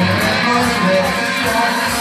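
Live rock band playing, led by strummed electric guitars.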